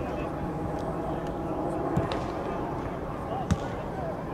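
A football being kicked twice, about a second and a half apart, the second kick the louder, over players' voices on the pitch.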